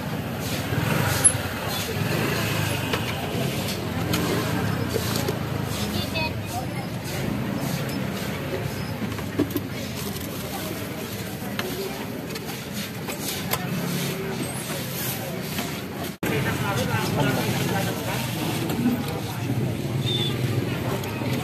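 Roadside street ambience: a steady rumble of passing traffic with indistinct voices of people around.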